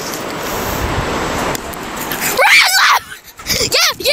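Wind buffeting the microphone for the first couple of seconds, then high-pitched shrieks and yells with a wavering, rising-and-falling pitch, in several short bursts over the last second and a half.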